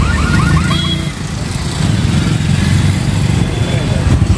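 Many motorcycle engines running at low speed as a crowd of bikes rolls across the level crossing. A rapid repeating electronic chirp, like an alarm, sounds over them and stops about a second in.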